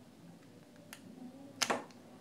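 A faint tick about a second in, then a sharp snap near the end: the plastic shell cover of a Philips TAT4205 true-wireless earbud clicking loose as a metal pry tool levers it open.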